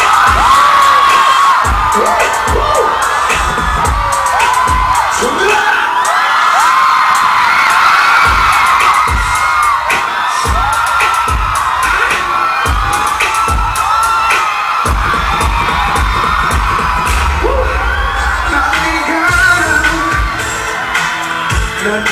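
Loud live pop music over a concert sound system, with a deep thudding bass beat that fills out about two-thirds of the way in. A crowd of fans screams over it.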